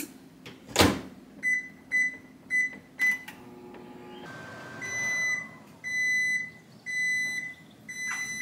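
Over-the-range microwave oven: the door shuts with a knock, four short keypad beeps follow as the cooking time is entered, and the oven starts with a steady hum. Near the end come four longer beeps, the signal that the cooking cycle has finished.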